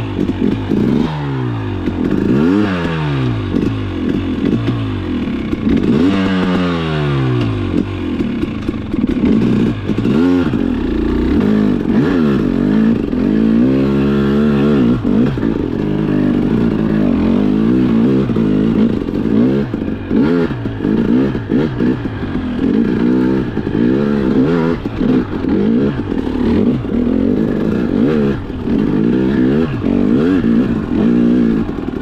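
KTM 300 XC-W TPI two-stroke enduro engine being ridden hard, revving up and dropping back over and over. Longer pulls come in the first half and quick throttle blips in the second, with clatter mixed in.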